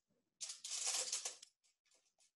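Tin foil stretched over a box crinkling as a pen is pushed through it to poke holes, about a second of rustling followed by a few faint crackles.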